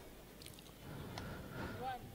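Faint, distant voices of players and onlookers, with a light tap about half a second in.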